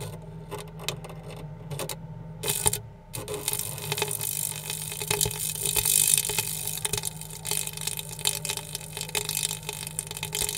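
Electrical arc drawn across the gap between a carbon graphite rod and a copper rod on an AFDD test rig, simulating a series arc fault. Scattered sharp crackles come first, then from about three seconds in a continuous crackling sizzle, all over a steady low hum.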